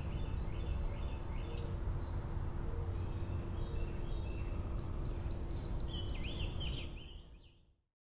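Field recording of songbirds singing, short whistled phrases from more than one bird, with a higher, quick series of notes joining about four and a half seconds in, over a steady low rumble. The sound fades out near the end.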